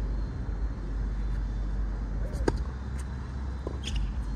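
Tennis ball struck by a racquet on the serve about two and a half seconds in, followed within a second and a half by two more sharp ball sounds from the bounce and return. A steady low rumble runs underneath.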